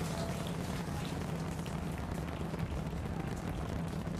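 Starship Super Heavy booster's 33 Raptor engines rumbling steadily during ascent, with a continuous crackle over the low rumble.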